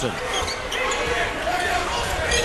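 Live court sound of a college basketball game: the ball bouncing on the hardwood under arena background noise and voices.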